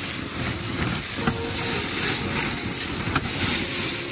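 Snow and ice sliding and scraping down the outside of a tarp shelter roof as the tarp is pushed up from inside with a roof snow brush, a steady rushing hiss with the tarp rustling. One sharp tap a little after three seconds in.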